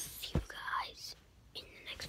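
A boy whispering close to the microphone, with a single thump about a third of a second in.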